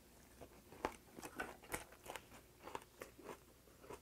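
Close-miked chewing of a mouthful of pumpkin-leaf ssam: quiet, irregular wet clicks and smacks of the mouth and teeth working the leaf wrap, rice and soybean paste.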